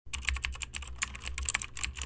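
Computer keyboard typing: a rapid, even run of key clicks.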